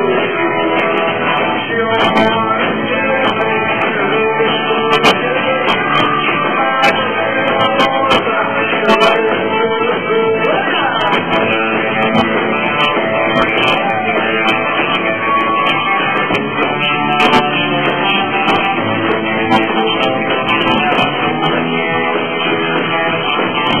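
Live rockabilly band playing a rock 'n' roll number, electric guitar to the fore, loud and continuous.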